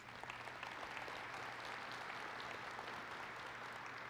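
Audience applauding, a steady, fairly faint clatter of many hands clapping.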